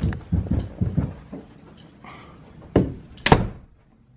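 Heavy footsteps thudding at a quick pace on a floor, then two loud thunks about half a second apart near the end.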